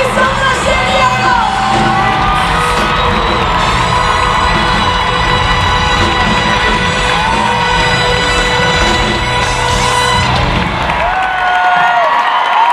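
Live pop-rock band playing loudly in an amphitheatre, heard from the audience, with the crowd cheering and whooping over the music. The bass and drums drop out near the end.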